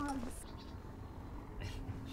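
A brief scrap of a person's voice at the very start, then quiet background with a faint steady hum and a couple of soft knocks near the end.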